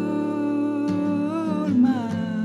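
A male voice sings long held notes over an acoustic guitar. The pitch bends up and back near the middle, and guitar strums come about a second in and again near the end.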